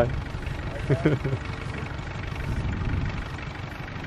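Farm vehicle's engine idling, low and steady, with a short voice about a second in.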